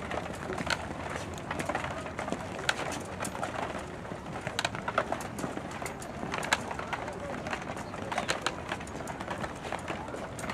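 Pigeons cooing over open-air ambience, with scattered sharp clicks and taps from footsteps on stone steps and faint voices in the background.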